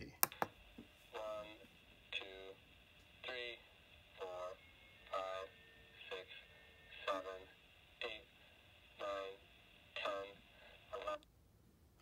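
ISD1820 voice recorder module playing back a recorded man's voice counting from one upward through its small speaker, one number about every second. The voice sounds thin and telephone-like, with a steady high electronic whine behind it. The playback cuts off after about eleven seconds, short of the twenty counted, because that is all the module records.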